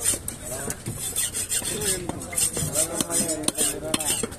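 A large curved fish-cutting knife slicing through a seer fish (king mackerel) on a wooden chopping block: repeated rasping strokes of the blade through flesh and skin, with a few sharp knocks of the blade on the wood.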